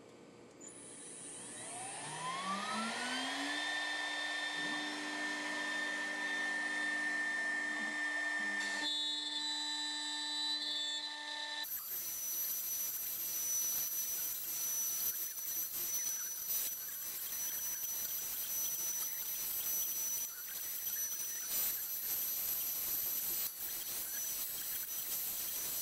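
ShopBot CNC router spindle spinning up, its whine rising in pitch over about two seconds, then running at a steady pitch. From about twelve seconds in, the router bit cuts into a fiberboard sheet as a steady noisy whir with a thin high whine.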